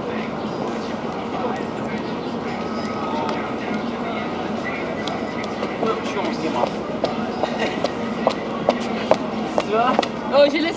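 Steady outdoor background noise with indistinct voices of people nearby. A few light knocks come in the second half.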